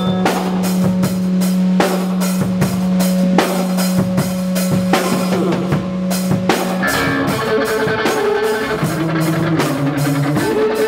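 Live experimental punk on electric bass and drum kit: the bass holds one long low note for most of the first seven seconds, then moves into a shifting riff, over steady drum and cymbal hits.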